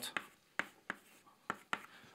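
Chalk on a blackboard: about five short taps and scratches as arrows and symbols are written.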